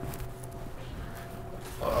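Low steady hum of a quiet room, then near the end a louder rustle as a person with a backpack sits down in an office chair, with a short grunted "uh".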